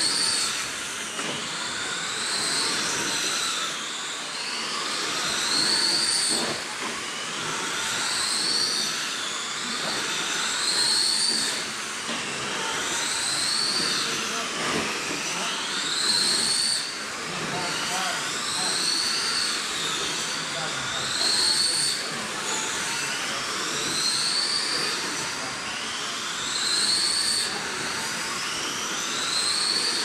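Several 21.5-turn brushless electric RC late model race cars lapping a dirt oval: their motors' high whine rises down each straight and falls away into each turn, repeating about every two and a half seconds, with several cars overlapping.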